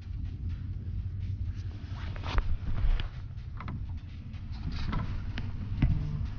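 Low steady rumble with small waves lapping against a small wooden boat's hull, broken by a few sharp knocks, the loudest about two seconds in and just before the end.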